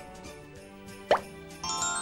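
Cartoon sound effects and music from an animated ident: soft background tones, then about a second in a quick upward-sliding plop, and near the end a bright ringing chime chord that keeps sounding.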